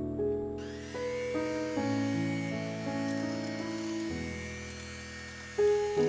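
An electric hand mixer starts about half a second in, its pitch rising briefly, then runs steadily, beating egg yolks into whipped meringue. Soft piano music plays throughout.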